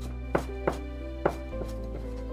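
Chinese cleaver chopping green onions on a thick round wooden block: three sharp chops at an uneven pace, then a lighter one, over background music.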